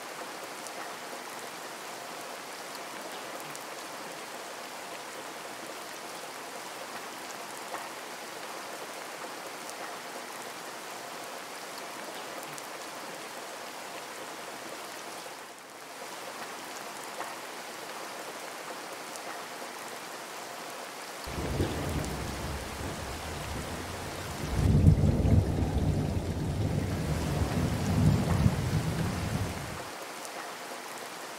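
Steady rain falling, an even hiss. About two-thirds of the way in, a low rumble of thunder comes in, grows louder a few seconds later, and stops abruptly near the end.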